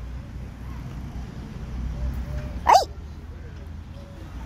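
A single short, sharp "ay!" exclamation about two and a half seconds in, its pitch jumping up and dropping back. Under it is a steady low rumble of open-air background noise.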